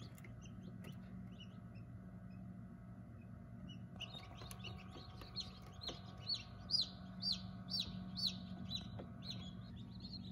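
Newly hatched chicks peeping inside an incubator: a run of short high chirps, about two a second, starting about four seconds in, over the incubator's steady low hum.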